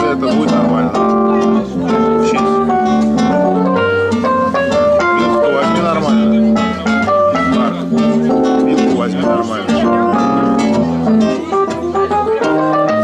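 Acoustic guitar and a Roland electric keyboard playing together: a plucked guitar line over held keyboard chords.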